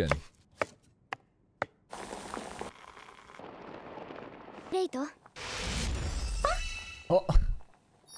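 Cooking sound effects from an anime: three sharp knife chops on a cutting board, then a steady hiss of food cooking that grows fuller and lower in the second half.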